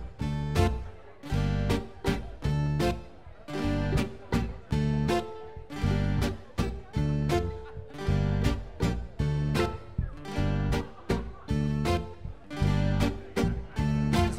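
Live folk-rock band playing the instrumental opening of a waltz: strummed acoustic guitar, fiddle, bass guitar and drums in a steady three-time pulse.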